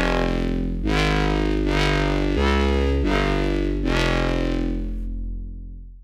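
Distorted, compressed 'foghorn' drum-and-bass bass patch in the Vital software synth playing a run of about six sustained low notes, each changing pitch every second or so, with a slight random drift on its fine pitch. The last note fades out near the end.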